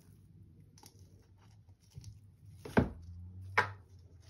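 Repotting sounds over a plastic bucket of dry potting mix: a few faint ticks and rustles, then two sharp knocks a little under a second apart near the end as the plastic trowel and pot are handled.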